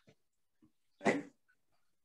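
A single short 'aye' spoken over a video call about a second in: one board member's vote in favour.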